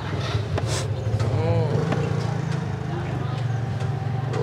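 Street traffic with a steady low engine rumble, like motorbikes running nearby. Faint voices and a few light clinks sound over it.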